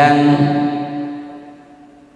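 A man's voice through a microphone holding one long drawn-out syllable, steady in pitch, that fades away over about a second and a half.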